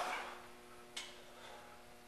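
Quiet room tone with a faint steady hum, and a single small click about a second in.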